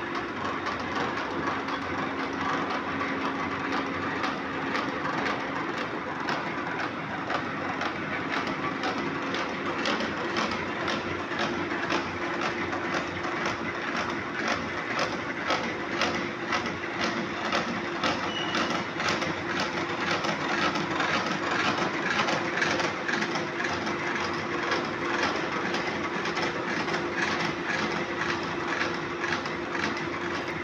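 Horizontal milling machine running as it mills slots into a gear blank. A steady hum carries a fast, regular clatter that grows stronger about a third of the way in.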